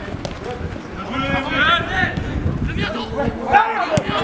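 Men shouting and calling out to each other during a football match, with one raised call about a second in and another near the end.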